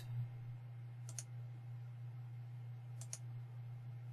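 A few faint computer mouse clicks, one about a second in and two close together near three seconds, over a steady low electrical hum.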